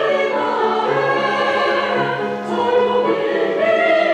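Women's choir singing in sustained phrases, accompanied by a grand piano.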